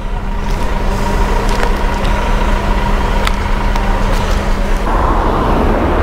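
Generator running with a steady hum over a low rumble. About five seconds in, the hum fades under a louder rushing noise that swells up.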